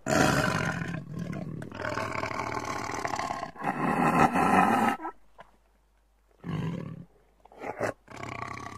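Bengal tiger roaring and snarling in long, loud bouts over the first five seconds. After a short pause it gives two brief roars near the end.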